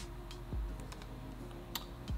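Quiet background music with a few sharp computer mouse clicks spread through it.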